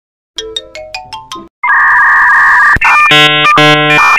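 Edited-in electronic sound effects: a quick run of about six chime notes stepping upward, then a loud ringtone-like electronic ringing that, near three seconds in, changes to a harsher, buzzier tone that breaks off briefly twice.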